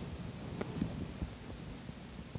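Quiet room tone in the sanctuary: a steady low hum with a few soft, dull knocks.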